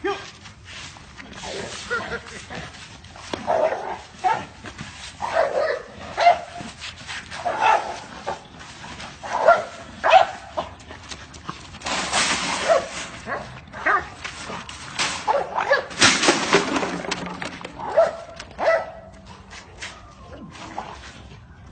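A dog barking repeatedly in short bursts, every second or two, with people's voices. There are two longer, louder noisy stretches about twelve and sixteen seconds in.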